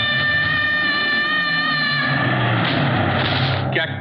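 A young girl's long, high-pitched scream as she is thrown, held on one pitch for about two seconds and then breaking into a rougher, noisier cry, with a low rumble underneath.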